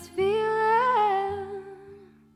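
A woman singing one long wordless note that lifts slightly in pitch about halfway through, then drops back and fades away near the end.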